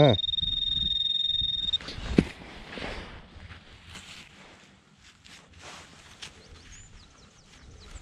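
Handheld metal-detecting pinpointer buzzing with a steady high tone while its tip sits on the target in the dug hole, cutting off a little under two seconds in. Then a single knock and faint rustling of soil being worked through gloved hands.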